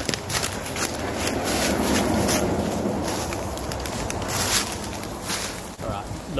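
A person running through dry bush: irregular hurried footfalls on leaf litter and undergrowth, with brushing and rustling of clothing and backpack close to the microphone.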